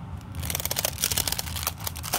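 Folded tissue-paper honeycomb fan being opened out into a circle on its wooden sticks: a quick run of crisp paper crackles and rustles, starting about half a second in and lasting about a second and a half.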